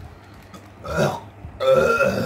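A man belching hard into a plastic bag held at his mouth: a short belch about a second in, then a longer, louder one near the end.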